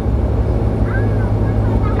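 Turboprop engines and propellers running at taxi power after landing, heard inside the passenger cabin as a steady drone with a deep, even hum.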